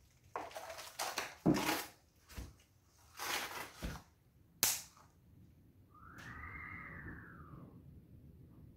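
Plastic paint cup being handled in gloved hands: several short crinkling, rustling bursts, then a sharp click about halfway through. Near the end comes a brief high whine that rises and then falls.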